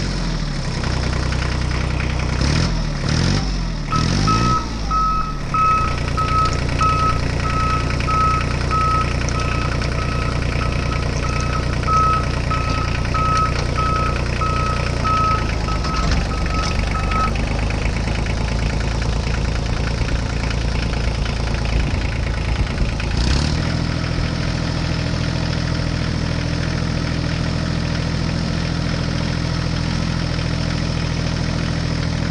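Motor-vehicle engine running, its pitch rising and falling a few seconds in and then holding steady, with the note shifting suddenly after about twenty-three seconds. A steady series of high reversing-alarm beeps sounds from about four seconds in to about seventeen. The toy tractor has no engine, so this is an added engine sound effect.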